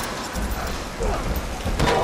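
Heavy water cascading and splattering onto a metal grating, a steady rushing noise, with a sharp hit near the end.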